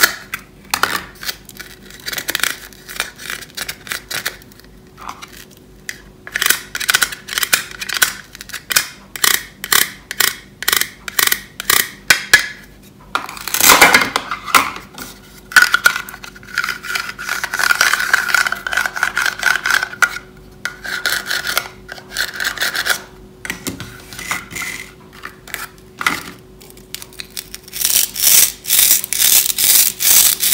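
Hard plastic toy food handled close to the microphone: plastic fries clicking and rubbing against each other and their cardboard carton, with a longer scraping rub in the middle. Near the end, a dense crackle as a toy strawberry's two halves are pulled apart.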